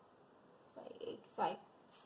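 A low, brief murmur of a voice about a second in, two short sounds over half a second, between stretches of faint room tone.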